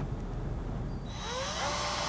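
Cordless drill starting up about a second in, its motor whine rising in pitch as it comes up to speed while the bit goes into the wall at the top of a bookcase.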